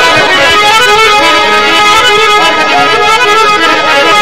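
Harmonium playing an instrumental passage of a live Punjabi folk song, its reeds holding steady notes.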